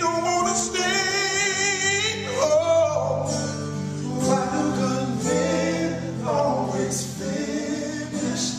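Soul singing in a gospel style, with more than one voice in harmony over sustained low notes. About a second in, one voice holds a long note with wide vibrato.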